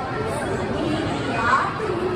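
Speech only: voices talking, with chatter.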